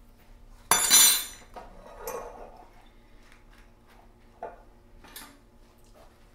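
Metal kitchenware handled while stuffing is spooned out: one loud, ringing metal clank about a second in, then a few lighter clinks and scrapes.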